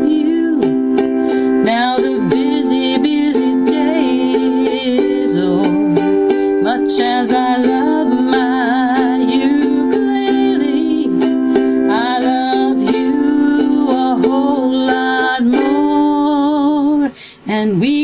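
Acoustic ukulele strummed in steady chords while a woman's voice sings a gliding melody over it. The music breaks off briefly near the end.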